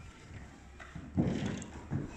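Children's footsteps and shoe thuds on a wooden hall floor, with a louder thump about a second in.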